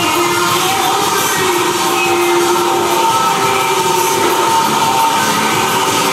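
Loud experimental noise music played live: a dense, unbroken wall of noise with a few held drone tones that drift slightly in pitch.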